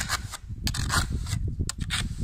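Steel trowel blade scraping and rasping loose, crumbling mortar off the base of a brick step in quick repeated strokes, a few each second. This is the stripping of damaged mortar before the step is repaired.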